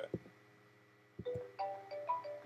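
A wake-up alarm starts playing a little over a second in: a repeating tune of clear, ringing electronic notes. A couple of soft thumps come just before it.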